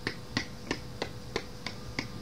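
Short, light clicks repeating at an even pace, about three a second, over a faint steady hum.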